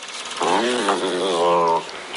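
A dog groaning: one long, drawn-out groan whose pitch wavers, starting about half a second in.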